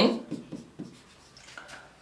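Marker pen writing on a whiteboard: faint, short scratching strokes as letters are written, after a voice trails off at the start.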